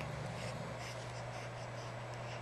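Steady low hum with faint rustling and hiss: room tone, with no distinct event.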